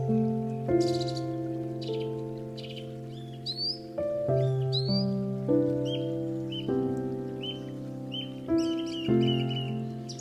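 Instrumental background music of sustained keyboard chords that change every second or so, with birds chirping over it in short rising calls.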